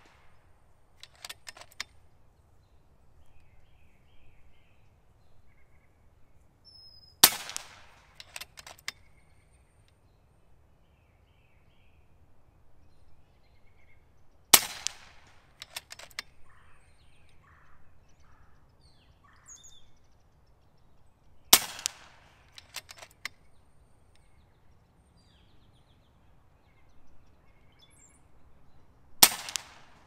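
Four shots from an FX Impact M3 .25-calibre PCP air rifle, about seven seconds apart. Each is followed a second or so later by a short run of clicks as the cocking handle is cycled to load the next pellet. Birds chirp faintly between shots.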